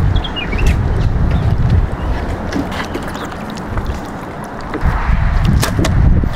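Skateboard rolling, its wheels giving a continuous low rumble with a few sharp clicks from bumps in the ground.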